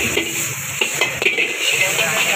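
Sliced vegetables sizzling in a hot wok over a gas flame, with a steady hiss. A metal ladle scrapes and clanks against the wok several times as they are stir-fried.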